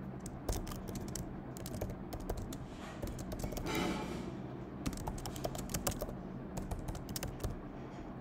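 Typing on a computer keyboard: an irregular run of key clicks, with a brief hiss about four seconds in, over a faint steady low hum.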